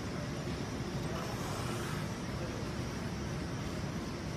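Steady low rumble with a fainter hiss above it: constant room noise, with no distinct knocks or clanks.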